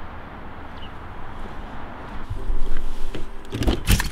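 Low background noise, then a few sharp knocks close together near the end as the driver's door of a 2001 Dodge Neon is shut.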